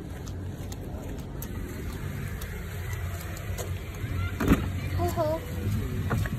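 A car engine idling with a low steady rumble. About four and a half seconds in there is a single sharp thump, such as a car door being shut, and voices start near the end.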